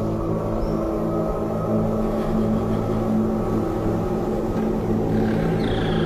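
Background film score music: low, sustained held notes that shift slowly, with no speech.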